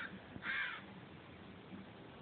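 A crow caws once, a short harsh call about half a second in, over a faint outdoor background.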